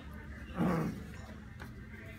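A short, low vocal sound with a falling pitch about half a second in, over quiet room tone.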